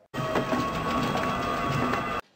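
Movie soundtrack: a steady mechanical whirring noise with faint held tones and light ticks, cutting in abruptly just after the start.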